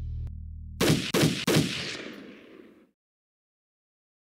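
Outro sting: a low electronic music drone ends, then three loud gunshot-like bangs come about a third of a second apart, their ringing tail fading out over about a second.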